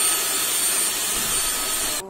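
Portable canister vacuum cleaner running steadily as its hose vacuums a sofa: an even rushing hiss with a thin, steady high-pitched motor whine.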